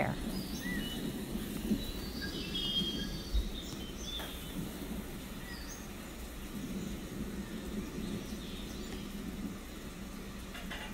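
Outdoor ambience with scattered short bird chirps over a steady background hiss and low hum.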